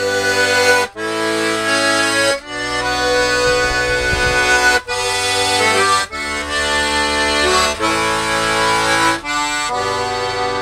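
Diatonic button accordion (melodeon) playing a traditional-style tune, with chords under the melody and brief breaks between phrases every second or two.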